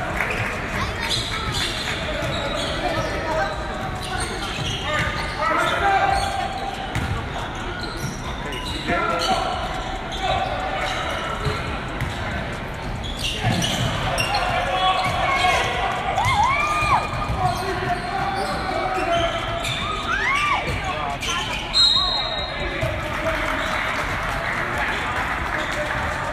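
Basketball bouncing on a hardwood gym court during live play, with a few short squeaks of sneakers, over indistinct voices of players and spectators in the hall.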